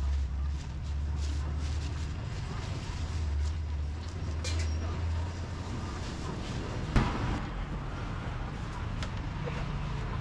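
Open-air street-market background: a steady low rumble with faint voices, and a single sharp knock about seven seconds in.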